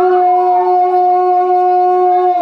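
Pepa, the Assamese buffalo-horn pipe of Bihu music, holding one long steady note, with no drumming behind it.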